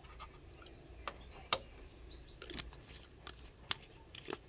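Plastic bottle and cap of cresol soap solution being handled, with faint rubbing and a few sharp plastic clicks, the loudest about a second and a half in, as the cap is put back on.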